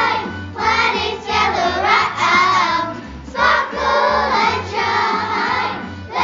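A group of children singing together over a pop backing track with a steady bass beat, with a brief dip about three seconds in.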